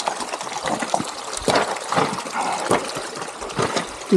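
Close-up scrambling noise: gloves, boots and clothing scraping and rustling against granite, with many small knocks scattered throughout.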